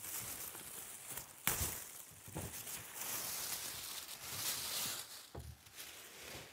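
Clear plastic bag rustling and crinkling as it is pulled up off a 3D printer, with a sharp knock about a second and a half in and a few softer knocks later.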